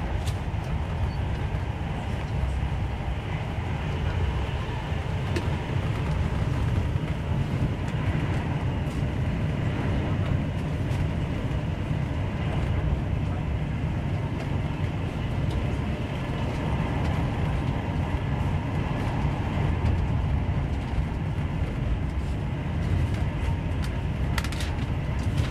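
Steady low rumble and wheel-on-rail noise of an InterCity 125 (HST) running at speed, heard from inside a Mark 3 passenger coach, with a few faint clicks.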